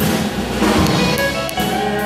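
Live band playing: electric guitar, bass guitar, drum kit and violins together, with sustained notes and occasional drum hits.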